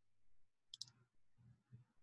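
Near silence, with one faint, short double click about three-quarters of a second in, from computer use at the desk.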